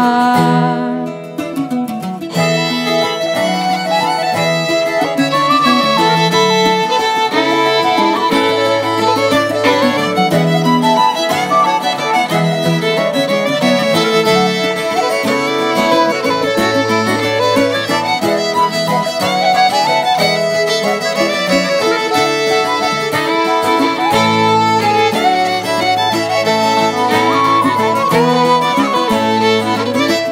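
Instrumental break in a live Irish traditional folk song: a fiddle leads the tune over plucked-string accompaniment. There is a brief lull about a second in, then the band plays on at full level.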